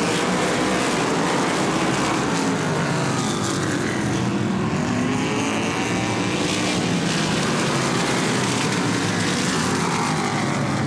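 Modified race cars' engines running at speed around the track, their pitch sliding slowly up and down as the cars go through the turns.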